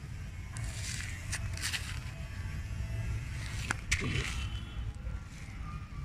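Low steady rumble with a few scattered rustles and clicks from movement over dry ground and twigs.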